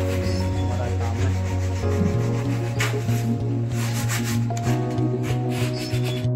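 Hand sanding of Malaysian teak wood with sandpaper: repeated back-and-forth rubbing strokes, heard under background music.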